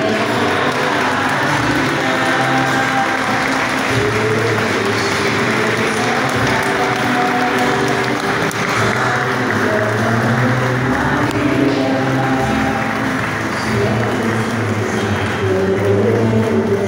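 A church congregation applauding over music with long held notes; the clapping is heaviest for the first ten seconds or so and then thins out.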